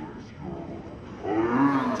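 Murmur of a crowd, then about a second in a man's loud, drawn-out shout with a rising and falling pitch.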